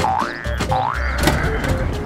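Two cartoon spring "boing" sound effects, each a quick dip and rise in pitch, about half a second apart, over background music.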